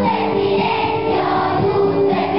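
A large children's choir singing a Christmas song, holding each note for a moment before stepping to the next.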